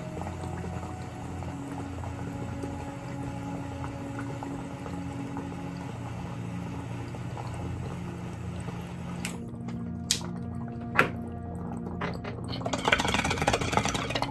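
Soft background music under a torch flame hissing as it heats the vaporizer's metal cap; the hiss stops about nine seconds in. Near the end comes bubbling of water in the bong during a slow draw.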